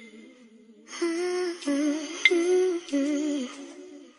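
Soft wordless humming melody in parallel voices, coming in about a second in, with a short bright chime ringing once just past the two-second mark.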